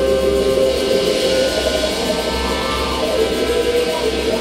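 A live band playing music, with electric guitar among the instruments.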